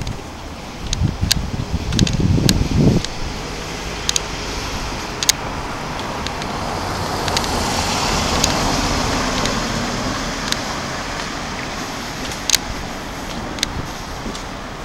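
Street traffic noise: a car goes by, its engine and tyre noise swelling to a peak about halfway through and then fading. Irregular low rumbles in the first few seconds and a few scattered sharp clicks.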